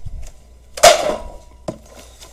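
Plastic packaging being handled and set down: a small thump at the start, one loud knock a little before the middle, then a lighter click.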